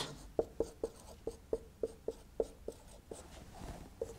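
Marker pen writing on a whiteboard: a quick run of short strokes, about four a second, then fainter rubbing near the end.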